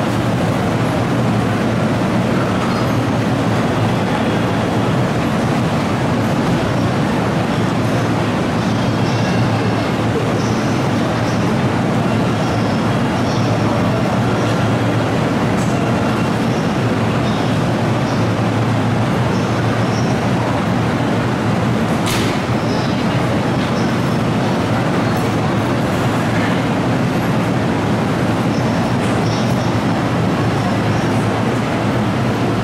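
Seibu 30000 series electric train standing at the platform with its on-board equipment running: a steady hum under the even noise of the station. A single sharp click sounds about two-thirds of the way through.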